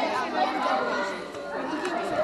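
Overlapping chatter of many young voices, spectators and players talking at once, echoing in a school gymnasium.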